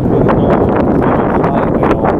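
Wind buffeting a body-worn camera's microphone: a loud, steady rumbling rush.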